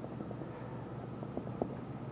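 Faint short taps and scrapes of a small palette knife pressing Van Dyke Brown paint onto a wet canvas, over a steady low background hum.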